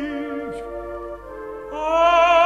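Orchestra holding soft sustained chords in a 1951 opera duet recording. Near the end a soprano voice comes in on a high held note with wide vibrato, and the music grows louder.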